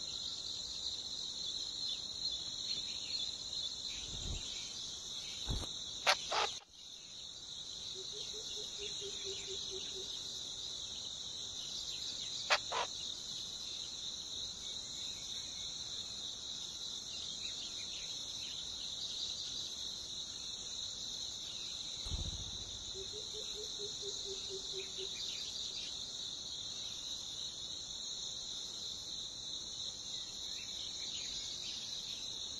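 Steady, high-pitched insect chorus, with a few sharp clicks around 4 to 6 seconds in and once more near 12 seconds. A short, low, pulsed trill sounds twice, about 8 and 23 seconds in.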